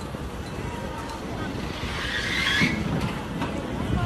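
Vehicle and street noise as a car's front end is pinned under a semi-trailer's rear underride guard, with a harsh scraping rasp about two seconds in.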